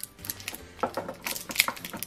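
Metal screw lid of a glass mason jar being twisted open by hand, giving a string of irregular light clicks and ticks, more of them in the second second.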